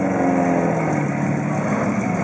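The engine of a classic full-size car lifted on 30-inch wheels (a donk), running as it rolls slowly by, its note steady and dropping a little in pitch over the two seconds.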